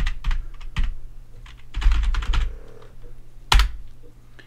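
Computer keyboard typing a command in two quick runs of keystrokes, then one louder single key press about three and a half seconds in.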